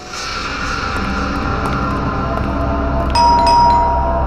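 Suspenseful TV background score: a low sustained drone swells in, and about three seconds in two bright chime-like strikes sound, the second left ringing.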